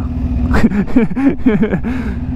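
Sportbike engine idling with a steady low rumble while stopped in traffic, with a man's indistinct voice muttering over it.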